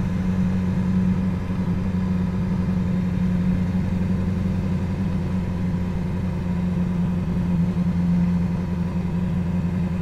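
BMW S1000XR's inline-four engine running at steady, even revs as the motorcycle rides slowly along a street.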